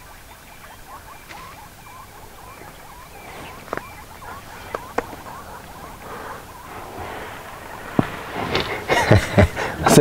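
Quiet dusk bush ambience with faint rapid chirping and a few sharp clicks, then people break into laughter near the end.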